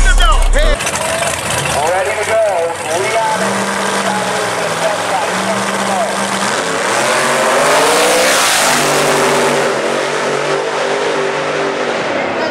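Drag race car engine at the start line, held at a steady pitch in two short bursts. About eight seconds in it launches with a rising rush of noise, then carries on as steady, even engine tones as it pulls down the track. Voices are heard early on.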